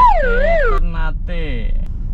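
A siren-like wail that warbles about twice a second as it falls in pitch, cutting off under a second in, followed by short vocal sounds.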